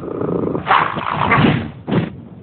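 A cartoon polar bear character making animal-like vocal sounds, loudest in the second half, with a short separate burst near the end.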